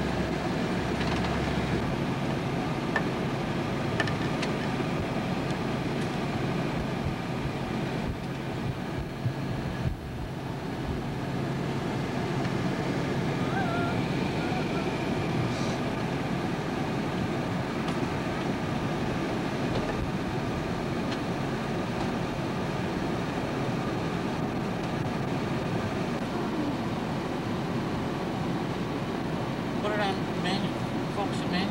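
Steady running of a vehicle engine with road or idle noise and a low hum, dipping briefly about ten seconds in.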